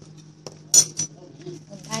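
Two sharp clinks of cutlery against china dishes, about three-quarters of a second and one second in, the first the louder.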